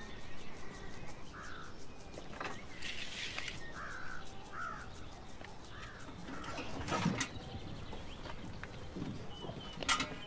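Crows cawing, about five short harsh calls in the first half, over a quiet rural outdoor background on a film soundtrack. A brief louder sound comes about seven seconds in.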